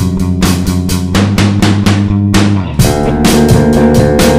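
Experimental rock instrumental: a drum kit beating steadily under electric guitar and bass. Near the end a note slides down in pitch and the guitar and bass move to new notes.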